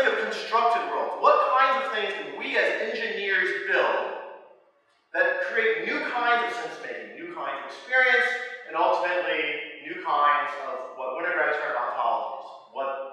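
A man lecturing in a hall, talking continuously apart from a half-second break to silence a little before the middle.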